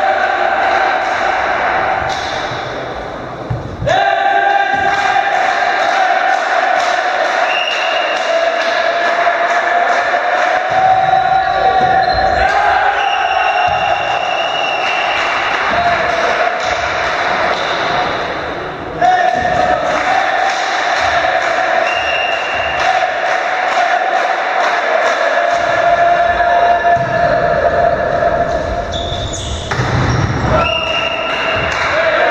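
A volleyball being bounced and struck in a gym, the hits ringing in the large hall, with players' voices. A steady high-pitched hum runs throughout, dropping out briefly twice.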